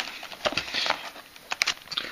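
Clear plastic lure packs rustling and crinkling as hands rummage in a cardboard box and pull one out, with a few sharp clicks about a second and a half in.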